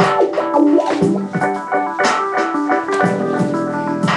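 Keyboard music, an electric-piano-like instrument playing a busy run of quick notes and chords.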